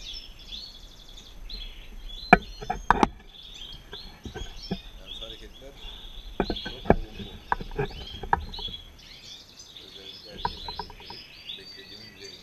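Many caged European goldfinches chirping and twittering continuously. Several sharp knocks and clicks, louder than the birds, come about two to three seconds in and again around six to eight seconds in.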